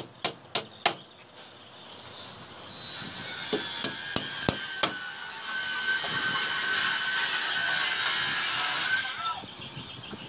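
Hammer driving nails into wooden formwork: four sharp blows in the first second, then a few scattered knocks around four to five seconds in. From about three seconds in, a steady hissing drone with a high whine holds until about nine seconds.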